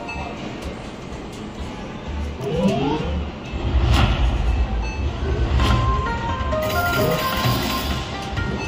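Coin Trio slot machine's bonus-game sound effects and music: a quick rising sweep of tones about two and a half seconds in, then a low rumble under short electronic tones that step up and down in pitch as the Tiger Feature bonus begins.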